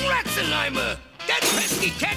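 Cartoon soundtrack of music and sound effects: a breaking, shattering sound at the start, then gliding, falling tones in two runs with a short lull between them.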